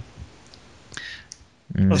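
A short pause in a conversation: faint hiss with a few small, soft clicks, then a man starts speaking again near the end.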